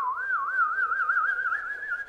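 A person whistling one long note that dips at first, then wavers up and down faster and faster as it slowly rises in pitch.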